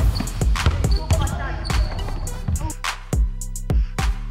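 Basketballs bouncing sharply on a wooden gym floor, several hard bounces in a row. About three seconds in, music with a bass line and a steady beat comes in under the bounces.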